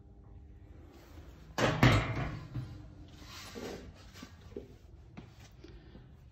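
Metal door of an electrical switchboard cabinet shut with a loud double bang about a second and a half in, followed by softer handling noise and a few light clicks.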